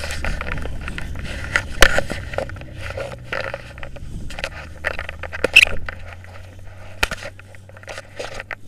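Close handling noise from a handheld action camera: jackets and paragliding harness gear rubbing and scraping against it, with irregular clicks and knocks, over a low steady rumble that fades out near the end.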